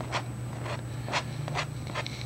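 Palette knife scraping shadow paint onto a canvas in about four short strokes, roughly half a second apart.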